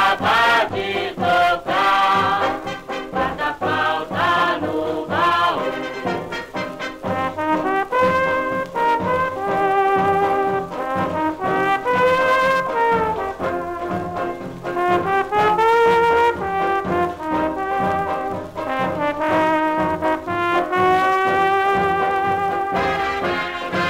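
Instrumental break of a samba played from a 78 rpm record: an orchestra with brass playing the melody over a steady samba rhythm, with no singing.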